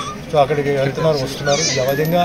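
A man talking in Telugu at close range, in a continuous flow of speech with short breaks.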